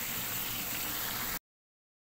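Faint, steady sizzling hiss from a wok of chicken and tofu in spiced sauce. It cuts off suddenly to dead silence about one and a half seconds in.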